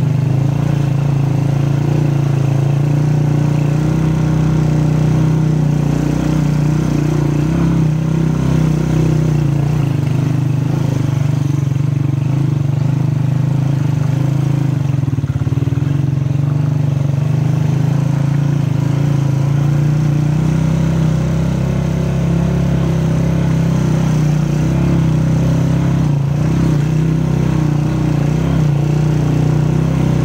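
Motorcycle engine running steadily at a constant low pitch, heard from on the bike as it is ridden over a rough dirt track.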